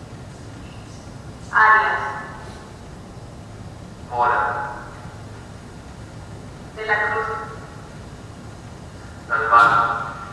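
A recorded voice played over the room's speakers, reading out single names one at a time, one about every two and a half seconds, four in all: the installation's narration of the most common Hispanic last names in the US census.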